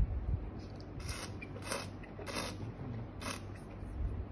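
A taster slurping red wine in the mouth, drawing air through it to aerate it: four short hissy sucks, the first about a second in and the rest roughly half a second to a second apart.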